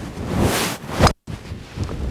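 A golf shot: the swing and strike of a Callaway Big Bertha 3 wood hitting the ball off the fairway, about half a second in, under loud wind noise on the microphone. Just after a second in, the sound drops out for a moment.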